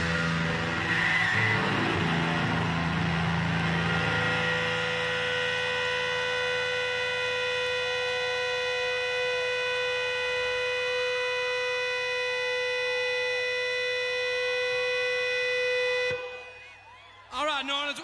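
A single amplified note held as a steady electric drone with many overtones after the song's final crash, with crowd cheering underneath at first; it cuts off abruptly about sixteen seconds in.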